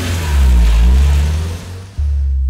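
A car driving away. Its engine and tyre noise swells, then fades out near the end.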